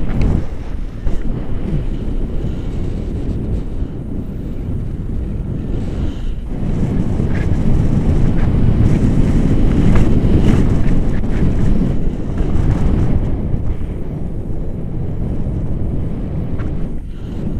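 Airflow buffeting an action camera's microphone during a tandem paraglider flight: a loud, steady, low rumble of wind. It grows louder about halfway through, then eases off slightly.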